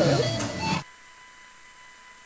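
Studio voices fade out just under a second in, leaving a faint steady electronic whine at one pitch, with fainter higher tones above it.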